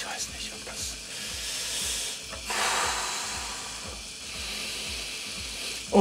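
Tattoo machine running steadily as the needle works into skin, under a steady hiss.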